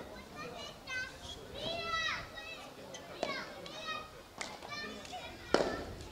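High-pitched children's voices calling and shouting in the background. A few sharp knocks cut through them, the loudest about five and a half seconds in.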